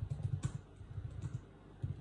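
Computer keyboard typing: a quick, uneven run of keystrokes entering a terminal command.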